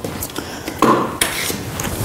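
A few light clicks and knocks of small objects being handled and set down on a tabletop.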